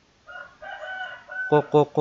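A single drawn-out pitched call lasting about a second, ending on a briefly held note, followed by a man starting to speak.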